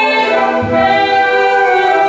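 Live performance of a woman singing long, held notes with a school instrumental ensemble accompanying her, in a reverberant hall. A short low note sounds about half a second in.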